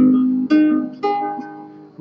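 Nylon-string classical guitar played fingerstyle: notes plucked at the start and again about half a second in, then left ringing and fading, as a short right-hand practice study.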